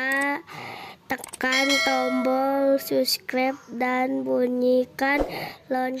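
A high-pitched, singsong voice giving a call to subscribe and turn on the notification bell, in short phrases with long held notes, with a few sharp clicks between the phrases.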